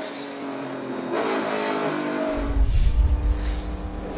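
NASCAR Cup stock car's V8 engine running at race speed from an in-car camera, its pitch rising briefly about a second in. A little past halfway a deep boom and a whoosh come in, a broadcast transition sound effect.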